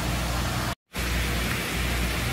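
Steady background hiss with a low hum, cut by a short gap of complete silence a little under a second in.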